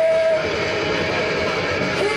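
Live punk rock from a singer and a distorted electric guitar: a long held high note fades about half a second in, leaving the distorted guitar.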